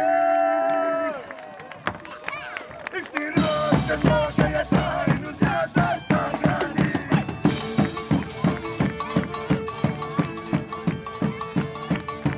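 A man's long held sung note that falls away about a second in; then, about three seconds in, a medieval-style folk band comes in loud, a large double-headed drum beaten about four times a second under a bowed nyckelharpa melody, with a steady drone note joining about halfway.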